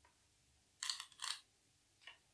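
Go stones clicking onto a wooden Go board as they are placed, a quick cluster of several sharp clicks about a second in.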